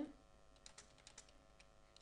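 A quick run of faint computer keyboard key clicks, a handful of keystrokes around the middle.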